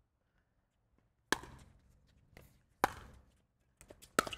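Pickleball paddles hitting the plastic ball twice: two sharp pops about a second and a half apart, with fainter taps between and after.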